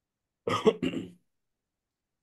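A person clearing their throat, two quick rasps about half a second in, heard over a video call with dead silence around it.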